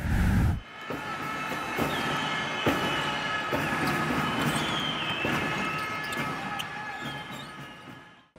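Basketballs bouncing on a court, with scattered knocks and a few high squeaks, under a steady music bed that fades out near the end. It opens with a loud hit that ends the intro sting.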